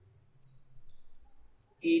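Faint, scattered clicks and taps of a stylus writing on a pen tablet, over a low faint hum. A man's voice starts near the end.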